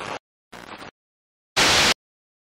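Short bursts of static hiss from a glitch-style title sequence: a brief one at the start, a fainter one about half a second in, and a loud burst of white noise near the end that cuts off abruptly.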